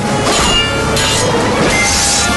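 Steel sword blades clashing and scraping, metal on metal, with two sharp strikes about a quarter of a second and a second in, each followed by a ringing of the blades.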